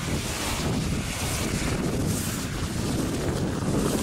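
Wind buffeting the microphone: a steady low rumble with a hiss that swells and fades a few times.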